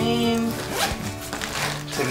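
A backpack's zipper being pulled and the bag handled while it is packed, with background music underneath.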